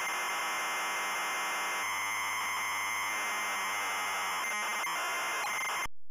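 ZX Spectrum-style cassette data loading sound: a dense, harsh screech of noise at a steady level, which cuts off suddenly near the end as the loaded screen is complete.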